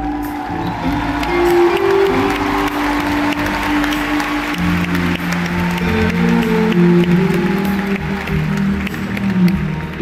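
Live band music heard from the stands, with the arena crowd applauding over it for most of the stretch. Held instrument notes carry through, and a lower chord and bass come in about halfway through.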